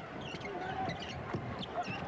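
Crowd noise in a basketball arena during live play, with a few short knocks from the court, the sharpest about a second and a half in.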